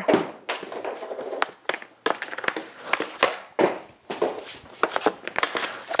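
Hockey stick and pucks on a plastic shooting pad: a series of sharp clacks and knocks as pucks are pulled onto the blade and fired as wrist shots at a canvas shooting target.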